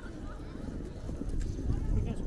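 Passersby talking in a crowd, with footsteps on wet stone paving and a low rumble of the open square.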